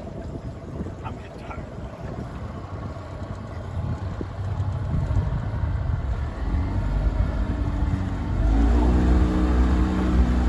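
Wind and water wash, then about six seconds in a boat motor starts to be heard running with a steady low hum. It gets louder about two seconds later.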